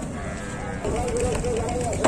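People's voices talking and calling out, with a short bleat-like animal call in the first half-second or so.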